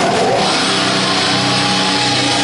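Live rock band playing loud, with distorted electric guitars holding sustained chords.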